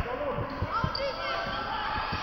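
A basketball being dribbled on a hardwood gym floor: a run of dull bounces, with children's voices around it.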